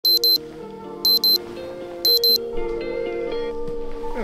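Digital alarm clock beeping in quick pairs, three double beeps about a second apart, then stopping, over soft background music.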